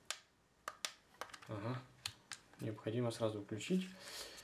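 Sharp plastic clicks from the lever buttons of a toy RC submarine's transmitter being pressed, several single clicks at uneven intervals, with low voice sounds in between.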